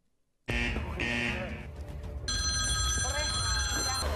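The red telephone in the house ringing: a steady, continuous electronic ring that starts about two seconds in, with housemates' voices over it.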